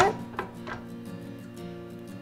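Quiet background guitar music with sustained notes, with a couple of faint clicks about half a second in.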